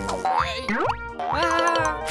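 A springy cartoon 'boing' sound effect that sweeps up in pitch about half a second in, over upbeat children's background music with a steady beat.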